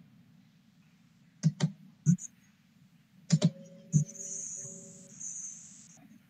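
A few sharp clicks from a computer being operated, some in quick pairs, over a constant low hum. About midway a faint steady two-note tone holds for under two seconds, and a thin high hiss sounds near the end.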